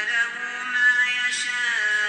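A man's voice chanting Quran recitation, holding a long drawn-out melodic note that steps down in pitch near the end.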